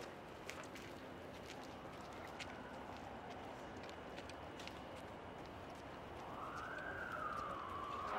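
Faint outdoor street noise with scattered footstep clicks on pavement, and a siren wailing, rising then falling, from about six seconds in.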